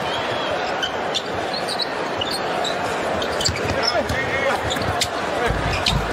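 Steady arena crowd noise over live basketball play, with a basketball bouncing on the hardwood court and short, high sneaker squeaks.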